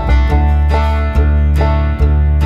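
Background music: an upbeat tune of quickly picked plucked strings over a steady bass, in a country or bluegrass style.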